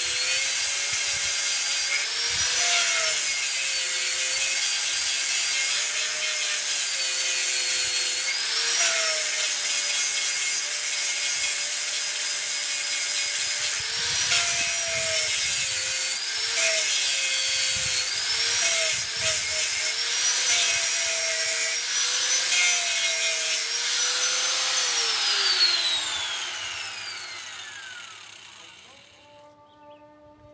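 Electric angle grinder running at speed as its disc grinds a wooden knife handle, its whine sagging in pitch each time the disc bites into the wood. Near the end it is switched off and the whine falls steadily as the disc spins down.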